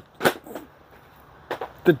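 A man's speech with a hesitant pause: one short noise about a quarter second in, then a quiet gap before the next word near the end.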